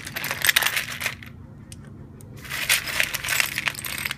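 Small glass mosaic pieces clinking and rattling as a hand rummages through a bowl of them. There are two runs of rapid clinks, one in the first second and another from about two and a half seconds on, with a steady low hum underneath.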